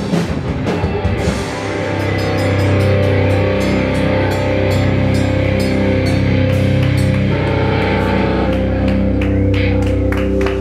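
Live hardcore punk band playing loud: electric guitars and bass settle into long held chords about two seconds in, under a steady beat of drum and cymbal hits.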